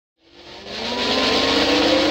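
Intro swoosh sound effect: a whoosh that swells in over the first second, with tones gliding slowly upward under the hiss, leading into the intro jingle.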